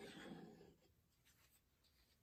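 A brief, faint scrape in the first second: a tool wiping drips of wet acrylic paint off the bottom edge of a canvas. The rest is near silence.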